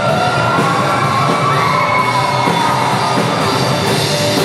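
Live rock band playing loudly in a hall: electric guitars and drums, with a singer's voice held over them.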